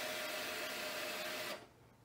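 Motorcycle's electric fuel pump priming as the ignition comes on: a steady whir with a faint tone that stops after about one and a half seconds.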